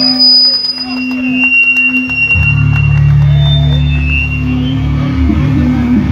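Live band's amplified electric guitars ringing with held feedback tones, then a heavy, distorted low chord comes in about two seconds in and is held.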